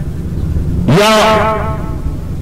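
A low, steady rumble in the background of the sermon recording. From about a second in, a man's voice holds one drawn-out word over it.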